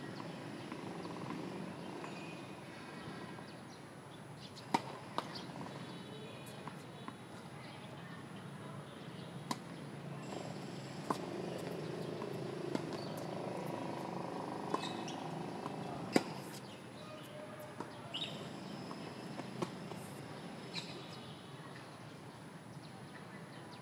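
Tennis rally: the ball struck back and forth by rackets, heard as a series of sharp pops one to two seconds apart. The loudest are the near player's shots, and the faint ones come from the far court, over a steady background hum.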